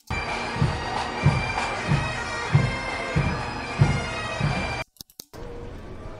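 Playback of an ambient room-tone recording: a steady hiss with a thin high whine and regular low thumps about every two-thirds of a second. It breaks off just before five seconds in and goes on as a quieter, even background hiss.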